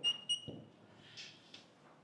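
Dry-erase marker squeaking on a whiteboard as it writes: two short, high squeaks in the first half second, then a couple of fainter marker strokes.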